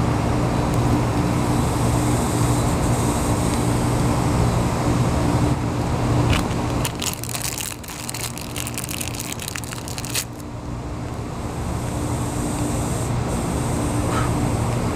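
A steady low motor hum with a constant pitch runs throughout. Around the middle, a run of sharp crackling clicks lasts several seconds.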